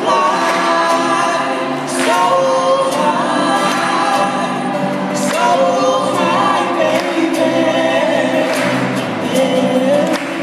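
A small vocal group singing together in harmony, amplified, with light acoustic guitar strumming underneath.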